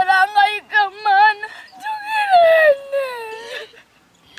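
A child wailing in tears: a run of high, wavering cries, the last one long and falling in pitch, dying away near the end.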